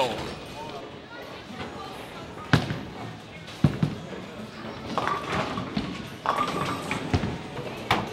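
Bowling alley: a bowling ball rolling down the lane, with two sharp knocks about two and a half and three and a half seconds in and later clattering from balls and pins, over a background of voices and hall noise.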